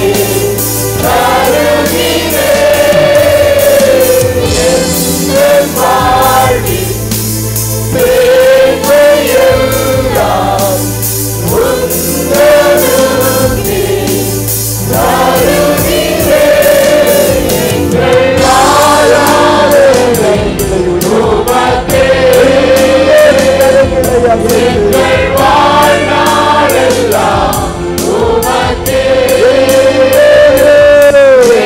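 Worship team and congregation singing a Tamil praise song together, a sustained, swaying melody over held low accompaniment notes. A steady percussion beat joins a little past halfway.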